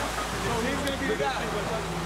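Men's voices in a heated argument, one ordering the others to leave, over steady street background noise.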